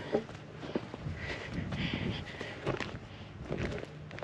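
Footsteps of a person walking on the ground outdoors, irregular soft steps and scuffs, with a faint high-pitched tone for about a second and a half near the middle.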